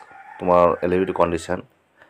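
A man's voice, one drawn-out syllable followed by a few short ones, then a brief pause near the end.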